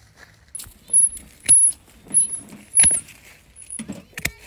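A run of about six sharp clicks at uneven intervals, most of them followed by a brief high, thin ring.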